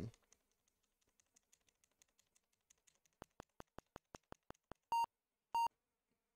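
A computer keyboard key tapped rapidly over and over, faint at first, then sharper at about six taps a second. Near the end come two short beeps half a second apart: the virtual machine's BIOS beeping at the keys being spammed.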